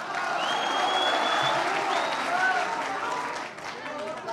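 Audience applauding, with a thin high tone for about a second near the start.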